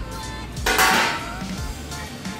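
Background music, with one brief, harsh metallic clatter lasting about half a second, a little over half a second in.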